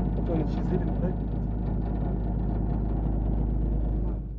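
Engine of a Mamba armoured personnel carrier running steadily with a deep hum, and people's voices talking over it, most clearly in the first second.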